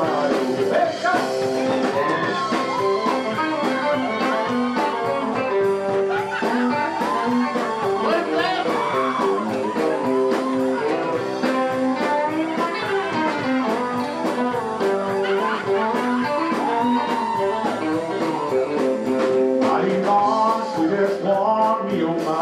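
A live band playing a country-style cover, led by an electric guitar over a steady drum beat.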